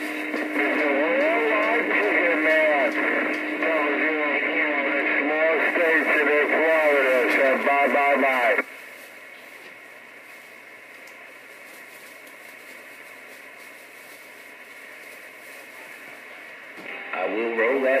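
A voice received over a Stryker SR-955HP CB radio, thin and narrow-sounding through the radio's speaker. About eight and a half seconds in, the transmission cuts off suddenly, leaving a faint steady static hiss until another voice comes in near the end.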